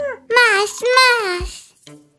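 A cartoon baby's high child voice sings two short phrases with sliding pitch, then fades out.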